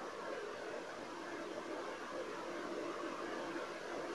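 Fish curry boiling in a steel pot on a gas stove at high flame: a faint, steady hiss.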